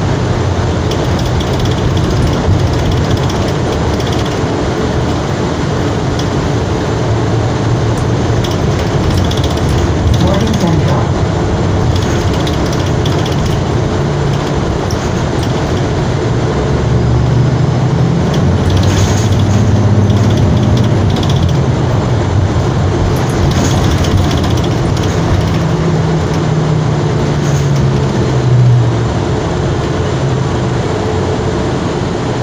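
Interior ride noise of a 2020 Gillig BRT hybrid-electric transit bus under way: steady road and drivetrain noise through the cabin, with a low hum that rises and falls in pitch in the second half and a few sharp clicks.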